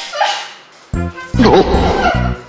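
Background music: a short pitched sound, then a loud beat with deep bass that starts about a second in.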